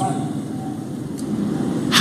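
A pause in a speech amplified over a public-address system at a large outdoor gathering: steady background noise of the open-air venue, with the echo of the last word fading at the start.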